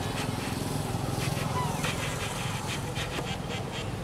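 Outdoor ambience: a steady low hum with scattered short clicks and rustles, and a faint brief call about a second and a half in.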